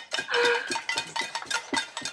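Metal pots and pans being banged, many quick irregular metallic clangs, some with a short ringing tone.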